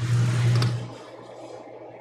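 Handling noise as the priest purifies the chalice and vessels at the altar: a rushing noise over a low hum that fades after about a second.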